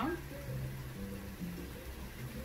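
Quiet background music: low held notes that shift pitch every half second or so, with no other clear sound.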